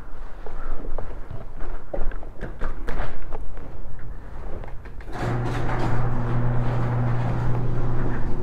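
Footsteps and small knocks, then about five seconds in an electric garage door opener starts and runs with a steady hum.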